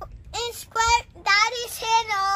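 A young boy singing a few drawn-out notes in a high voice, in four short phrases.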